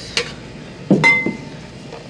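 Glass vase clinking as it is handled: a light tick, then a louder knock about a second in with a short bright ring.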